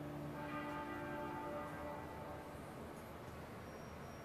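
A single toll of a large bell, faint, its ringing tone dying away over about two seconds.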